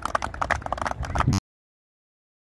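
A small group applauding, with rapid, uneven hand claps that cut off suddenly about one and a half seconds in.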